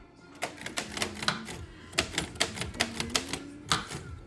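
Keys of a 1940 Underwood manual typewriter being struck in a quick, irregular run of clacks, starting about half a second in and stopping just before the end.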